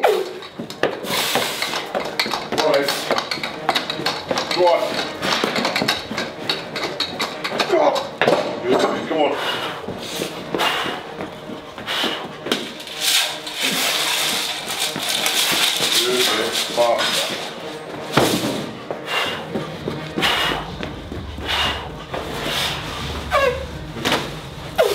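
Heavy strongman training implements (a plate-loaded duck walk and sandbag) being lifted, carried and set down on a gym floor, giving repeated irregular thuds and knocks over heavy footsteps.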